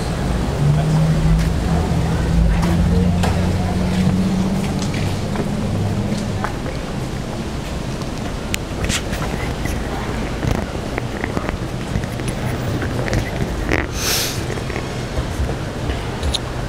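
Street traffic: a vehicle's engine drone that rises a little in pitch over the first six seconds, then a short hiss about fourteen seconds in.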